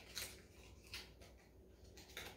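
Near silence with a few faint rustles and light clicks, about a second apart, from small cardboard boxes and bottles being handled.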